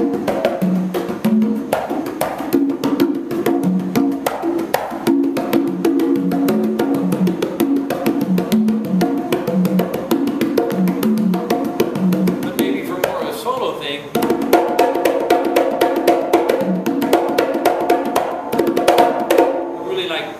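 Conga drums played by hand: a continuous groove of open tones and sharp slaps. About two thirds of the way through, the playing gets louder and busier, with higher-ringing strokes.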